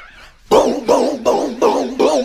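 A quick string of short yelping calls, about three a second, each with a wavering pitch, starting about half a second in.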